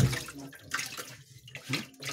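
Water splashing and sloshing in a shallow turtle tank, in a few short splashes.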